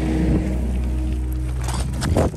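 Kobelco mini excavator's diesel engine running steadily at idle, a constant low hum.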